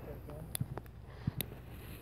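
Footsteps on dry, cracked dirt: a few soft thumps and sharp clicks, with a faint voice near the start.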